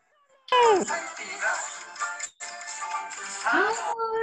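Cueca singing heard through a video call: a loud cry falling in pitch comes about half a second in, then voices and music mix. Near the end a woman's voice rises into a held sung line.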